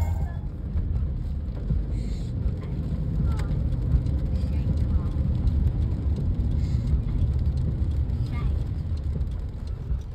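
Steady low rumble of a car heard from inside its cabin in traffic, with a few faint short sounds over it.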